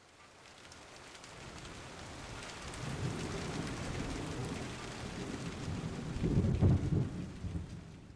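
Aquarium water splashing and dripping as a hand pulls wads of moss and algae out of the tank, with a crackly patter that builds up and is loudest near the end.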